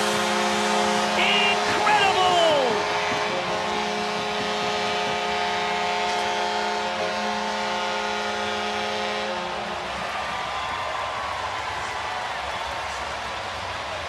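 Ice hockey arena goal horn sounding a long, steady chord for the home team's goal, stopping about ten seconds in. A crowd cheers under it and carries on after it stops.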